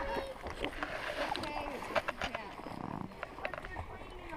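Small splashes, lapping water and light knocks on an inflatable kayak as it sits on the water, with faint voices in the background.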